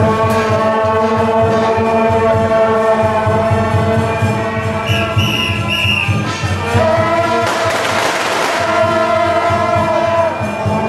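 A procession brass band plays a sustained tune with long held notes over a quick, steady drum beat. Three short high whistle-like blasts come about five seconds in, and a burst of noise follows around eight seconds.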